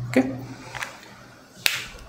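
A short, sharp click, faint once near the middle and then a louder single click late on.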